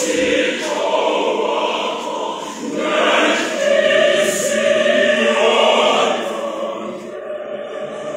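A mixed choir of men's and women's voices singing together, swelling louder from about three seconds in and easing off near the end.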